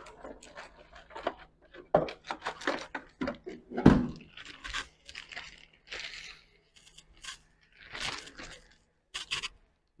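Plastic drone propeller blades and drone parts being handled and fitted: irregular small clicks, scrapes and rustles, over a faint steady hum.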